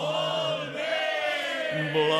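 Music: a song in Catalan, with voices singing long held notes.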